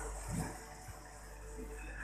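Quiet room hum with a soft low thump about half a second in and a faint click shortly after: handling noise from a phone being moved about.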